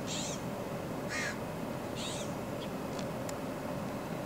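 A bird giving three short calls about a second apart, over a steady outdoor background hiss.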